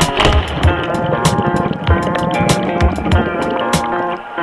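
Background music with a steady drum beat and sustained melodic tones.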